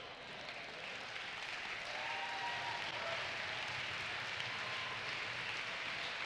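Congregation applauding, building up gently over the first couple of seconds and then holding steady.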